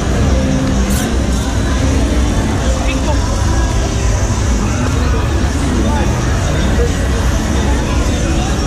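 Busy nightlife street: steady crowd chatter with bar music in the background and a motorbike running close by.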